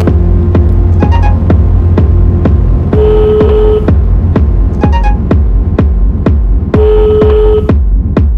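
Hard techno track: a steady kick drum with a pulsing bass comes in at the start, replacing a held organ-like chord, with a short sustained synth tone over a noise swell twice, in the middle and near the end.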